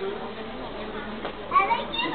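Indistinct chatter of onlookers, including children's voices, with a louder, higher-pitched voice calling out about one and a half seconds in.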